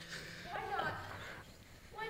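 A young man's voice making a garbled, wordless vocal noise, a cry that wavers up and down in pitch from about half a second in to just past a second.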